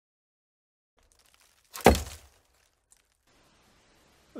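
A single sharp thump about two seconds in, dying away within half a second, with faint room noise around it and a tiny click a second later.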